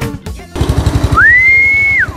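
Rolux petrol lawnmower engine running with a rapid, even firing beat, starting about half a second in. A whistle joins at about a second, rising, holding steady and dropping away near the end.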